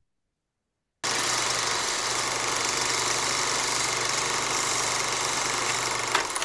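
Film projector sound effect: a steady mechanical whirr with a low hum, starting about a second in after a brief silence, breaking into a few clicks near the end.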